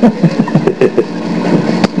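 People chuckling and laughing in short, broken bursts, over a steady low hum on the recording.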